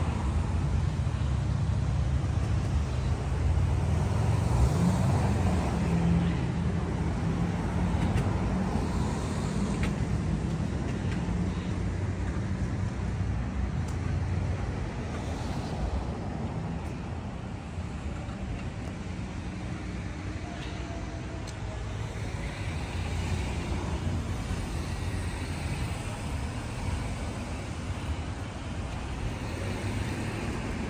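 Street traffic ambience: cars passing with a steady low rumble, loudest in the first several seconds and easing off later.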